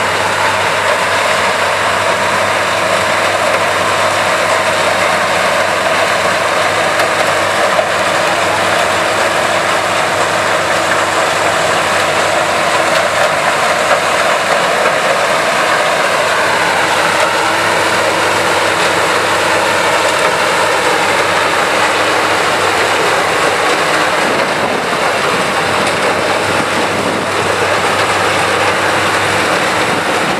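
Sugarcane harvester cutting cane, its engine and cutting gear running as a steady, loud mechanical din with a faint whine that drifts slightly in pitch. A tractor engine runs alongside.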